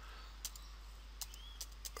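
Faint computer keyboard keystrokes: about five separate taps while a few letters are typed.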